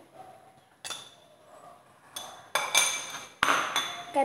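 Steel spoons clinking against ceramic bowls while spices are spooned out: a single light tap about a second in, then several sharp clinks with a brief ring in the second half.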